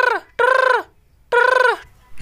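Mobile phone ringtone: three short, wavering, pitched calls of about half a second each, the third after a brief pause.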